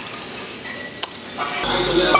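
Lever buckle of a leather lifting belt snapping shut with one sharp click about a second in.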